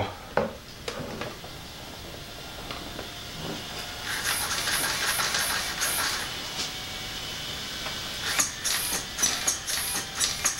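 Steering servo of an ARRMA Typhon 6S BLX whirring in quick back-and-forth bursts as the steering is swung from the transmitter, in two spells with a few clicks before them.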